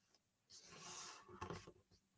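Mostly near silence, with a faint rustle of a sheet of paper being folded and pressed flat along a crease by hand, starting about half a second in and fading by near the end.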